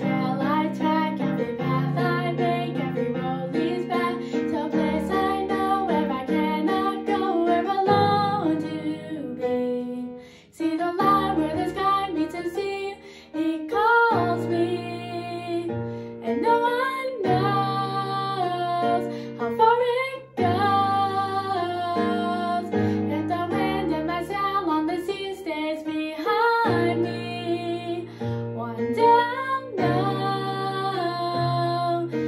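A young girl singing a musical-theatre ballad solo over an instrumental backing track with strummed guitar, with short breaks between phrases.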